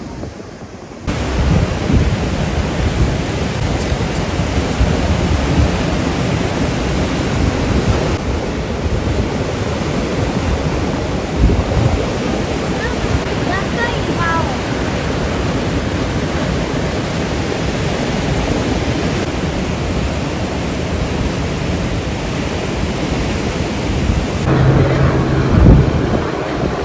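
Ocean surf washing over a rocky reef, with wind rumbling on the microphone; it starts abruptly about a second in. A few faint chirps sound briefly near the middle.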